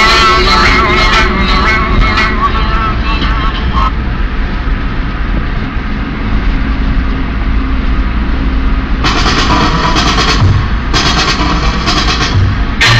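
Music playing inside a moving car stops about four seconds in. Then only the steady low road and engine noise of highway driving is heard for about five seconds, until music with a beat starts again near the end.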